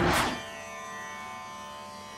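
Instrumental transition music. A whoosh in the first half-second gives way to a soft, held drone of many steady tones.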